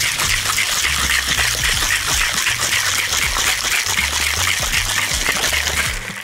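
Crushed ice and liquid rattling and sloshing in a cocktail shaker tin sealed onto a glass, shaken hard in a steady rhythm. The shaking stops near the end.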